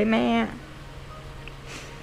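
A young woman's voice reading aloud in Thai, ending a phrase about half a second in, followed by a pause with only a faint steady low hum and a brief soft hiss near the end.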